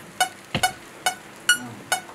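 Metronome click track counting in before the song: a steady run of short, high-pitched beeps, about two and a half a second. A single thump sounds about half a second in.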